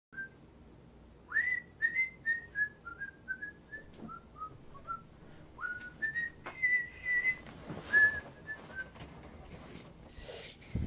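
A person whistling a short, quick tune: a string of brief clear notes, many starting with a quick upward slide, with a few knocks and rustles of someone moving about and sitting down.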